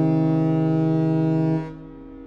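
A ship's horn sounds one long, low, steady blast, which cuts off about one and a half seconds in and leaves a short fading echo.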